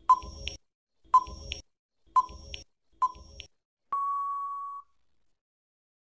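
Quiz countdown timer sound effect: a short beep about once a second, four times, then a longer steady beep about four seconds in that marks time up.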